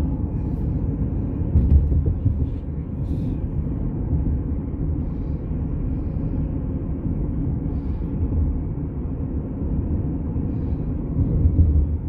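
Steady low rumble of a car driving, heard from inside the cabin, with louder low swells about two seconds in and near the end.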